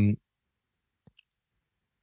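A man's word trails off, then a pause of near silence broken by two faint short clicks about a second in.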